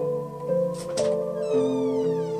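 Electronic keyboard playing slow, sustained chords, with a small parrot calling over it: two short, sharp squawks just before a second in, then a longer, high call that slides down in pitch.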